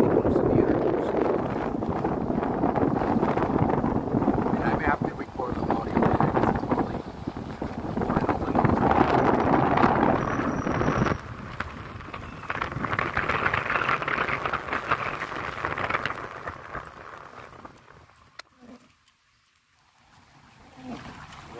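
Wind noise on the microphone and road noise from a slowly moving car. The noise drops in level about eleven seconds in and fades away over the last few seconds.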